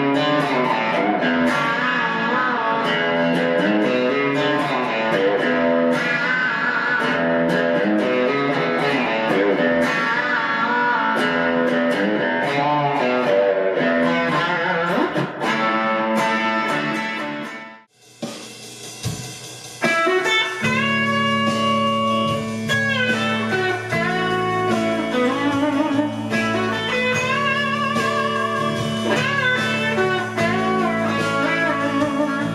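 Grez Folsom solidbody electric guitar played with an overdriven, crunchy tone: fast, busy lead lines. About two-thirds of the way in the playing stops briefly, then a new passage starts with longer held notes.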